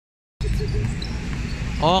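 Steady low background noise of an outdoor basketball court during play. It starts suddenly just after the beginning, and a man starts talking near the end.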